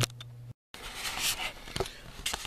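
A faint low hum ends at an edit with a brief dropout. It is followed by rustling handling noise as a tape measure is brought up against the gear shifter, and a sharp click near the end.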